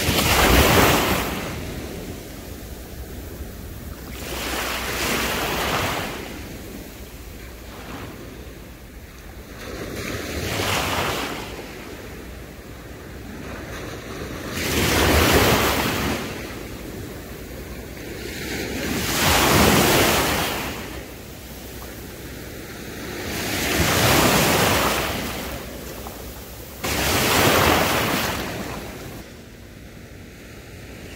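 Small sea waves breaking and washing up a sandy shore, a swell of surf about every four to five seconds over a steady hiss of water, with wind buffeting the microphone.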